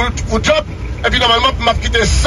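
A man talking in short, broken phrases, with a steady low rumble underneath.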